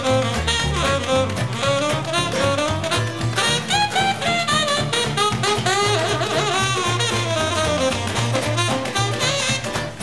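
Instrumental break in an uptempo swing song: a lead melody line plays over a moving bass line and a steady beat, with no vocals.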